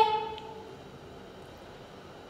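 A woman's drawn-out spoken syllable trails off in the first half second, followed by quiet room tone.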